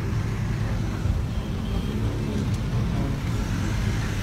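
Steady low rumble of idling truck and vehicle engines in street traffic, with faint voices in the background.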